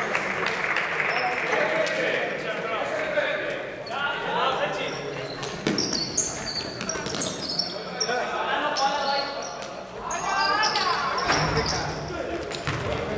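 Basketball game in a large sports hall: the ball bouncing on the hard court while players' voices call out, all echoing in the hall.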